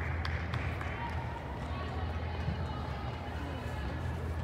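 Distant shouts and calls of soccer players and spectators in an indoor turf facility, over a steady low hum, with a few short sharp knocks.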